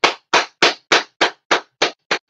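One person clapping hands in a steady rhythm, about three sharp claps a second, seven in all.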